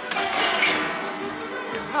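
A folk band's music carrying on under a noisy jumble of background voices, the din of a comic brawl breaking out during the recording.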